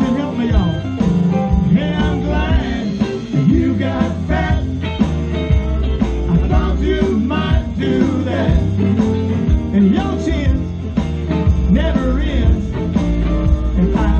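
Live blues-rock band playing an instrumental passage with no lead vocal: electric guitars, electric bass, drums and keyboard.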